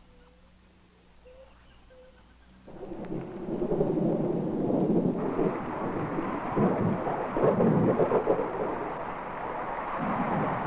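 A low hum with a few faint short calls, then about three seconds in a loud, churning rush of noise starts up and keeps going: a thunderstorm, rumbling thunder with heavy rain.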